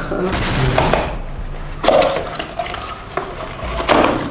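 Cardboard boxes being handled and opened: rustling and scraping, with sharp knocks about two seconds in and near the end as a ceramic mug is lifted out of its box.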